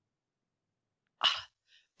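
Silence, then a single short breathy burst from a person's mouth or nose a little over a second in.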